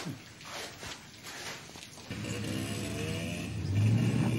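Motorcycle engine running steadily, coming in about two seconds in and growing louder.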